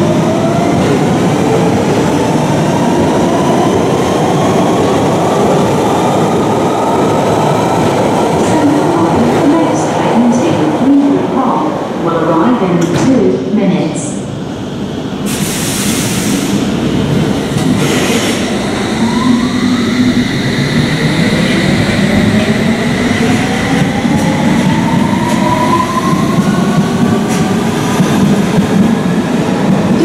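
London Underground trains at a subway platform. A Central line train accelerates away with its traction-motor whine rising in pitch over rail and wheel noise. After some clatter and a short hiss of air about halfway through, an S-stock District or Hammersmith & City line train pulls out, its motor whine rising again.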